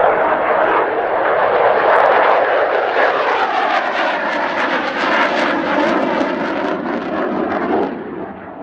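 Mitsubishi F-2 fighter's single F110 turbofan running loud as the jet passes low and close on approach. The rushing engine sound sweeps downward in pitch as it goes by.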